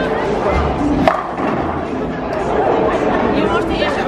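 Bowling ball rolling down the lane and crashing into the pins, with a sharp impact about a second in, under music and chatter echoing in a large bowling hall.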